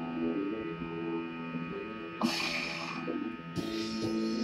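Electric guitar played through an amplifier: held notes changing every half second or so, over a steady amplifier hum. A scratchy burst of noise comes a little over two seconds in and again near the end.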